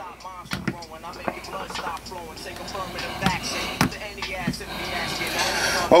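A song with vocals over a drum beat, heard playing through Beats Solo on-ear headphones during a listening test.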